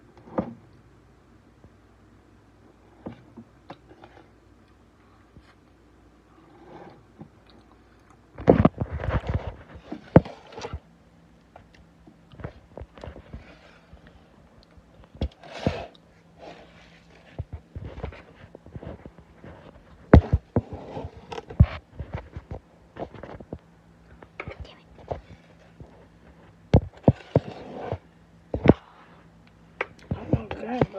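Irregular knocks, clicks and scrapes of handling, with chewing as the air-fried cookie is tasted. A cluster of louder knocks comes about eight to ten seconds in.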